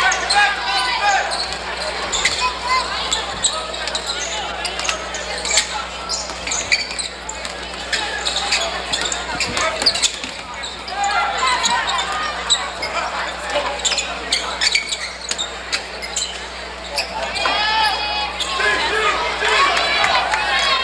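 A basketball dribbled and bouncing on a hardwood gym floor during live play, with crowd and player voices and shouts throughout. A steady low hum runs underneath.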